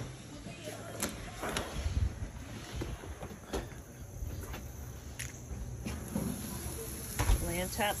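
Footsteps and phone-handling noise while walking through a house and out a door, with several sharp clicks and knocks along the way. A voice begins right at the end.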